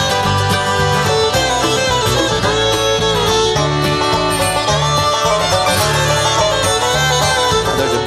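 Bluegrass band playing an instrumental break between sung verses: bowed fiddle with banjo and acoustic guitar, over a steady stepping bass line.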